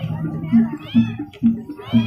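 Barongan procession music: a low drum beat repeating about twice a second, with short high notes that rise and fall over it.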